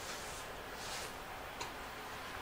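Quiet room noise with a few soft clicks, one sharper than the rest near the end.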